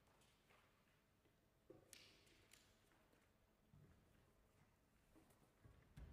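Near silence: room tone, with a few faint clicks and rustles about two seconds in.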